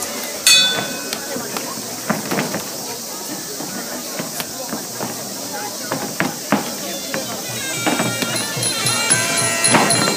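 Several sharp smacks of Muay Thai kicks and foot sweeps landing, over crowd chatter. Near the end, sarama fight music comes in: a reedy Thai pi oboe over a steady drum beat.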